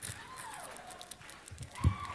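Quiet hall ambience with a faint distant voice sliding down in pitch early on, a few light clicks, and a single dull low thump near the end.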